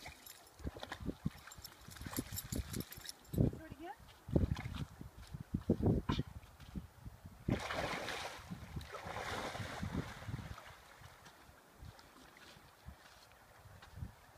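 A dog bounding through shallow lake water, with a burst of heavy splashing about halfway through that lasts around two seconds. Irregular low thumps run throughout and are the loudest sounds.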